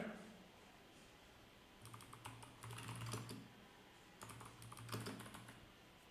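Faint typing on a computer keyboard, in two short bursts of keystrokes about two and four seconds in.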